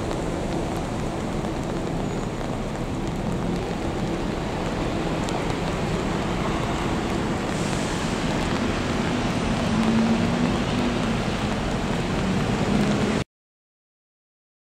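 Steady rain with city traffic noise mixed in, an even wash of noise that cuts off abruptly about 13 seconds in.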